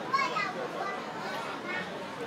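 Diners talking at restaurant tables, with a child's high-pitched voice rising briefly at the start, the loudest sound here.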